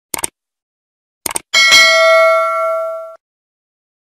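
Subscribe-button animation sound effect: two quick double mouse-clicks, then a bright notification-bell ding that rings for about a second and a half and cuts off abruptly.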